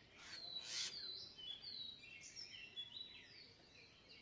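Small birds calling: a run of short, high, whistled chirps, many sliding downward in pitch, from more than one bird. A brief rushing noise in the first second is the loudest sound.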